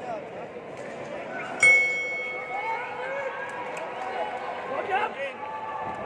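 One strike of the fight bell about a second and a half in, ringing on and fading over the next second or two: the signal that the round has begun. Crowd voices and shouts go on around it.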